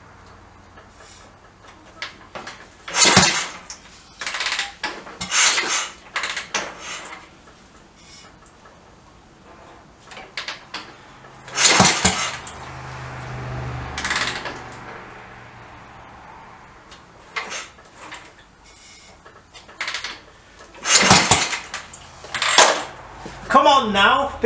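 Royal Enfield Bullet single-cylinder engine being kickstarted about five times, each kick a loud clattering stroke of the kickstart mechanism; the engine turns over but does not start, a sign of too little compression.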